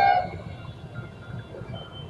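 A man's voice trails off at the start, then a pause filled only by faint, steady outdoor background noise with a low rumble.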